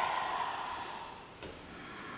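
Low room tone with a soft hiss that fades away over the first second and a faint click about a second and a half in.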